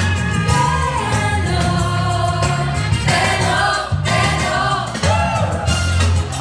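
A live church worship band playing a fast Latin-beat song: several singers carry the melody over a heavy bass line and steady percussion.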